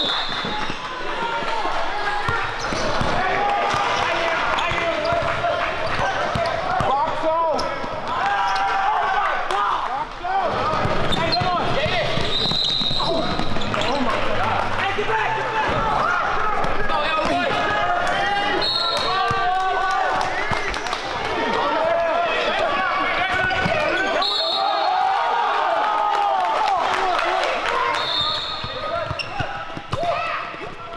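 Basketball game in a gym: the ball dribbling on a hardwood court and sneakers squeaking, under a steady hubbub of voices from players and spectators. Short high-pitched squeals recur every few seconds.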